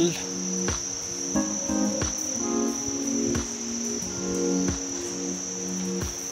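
A steady, high-pitched insect chorus, with soft background music chords underneath.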